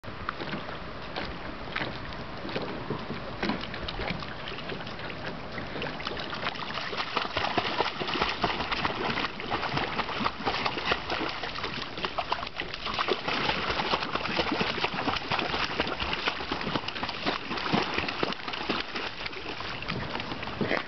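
A Boston Terrier paddling and splashing in lake water, with a man's hands in the water beside it; irregular splashes and sloshing that grow louder after the first several seconds.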